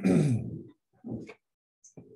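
A man clearing his throat: a rasping sound that falls in pitch over about half a second, followed by a shorter, softer sound about a second in.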